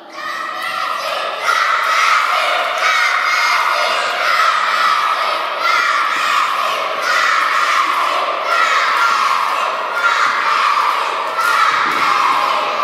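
A group of young children shouting and cheering without a break, many high voices overlapping, urging on a classmate running an obstacle course in a sports hall.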